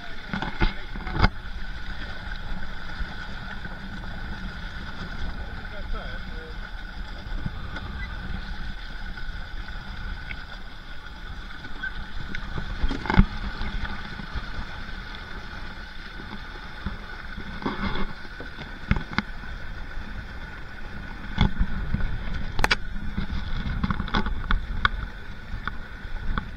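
Water slapping and lapping against a plastic kayak hull as it moves across choppy water, over a steady low rush of wind and water on a hull-mounted camera, with a few sharp knocks on the hull.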